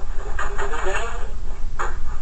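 A man's voice speaking over a steady low hum.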